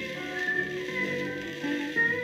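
Orchestral waltz played back from a 78 rpm record on a turntable: a high held melody line, sliding between notes, over the lower accompaniment.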